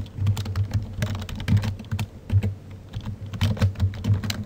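Typing on a computer keyboard: a quick, irregular run of keystroke clicks, thinning out briefly a little past halfway.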